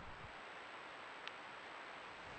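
Faint steady background hiss with a thin high whine, and one tiny click a little over a second in.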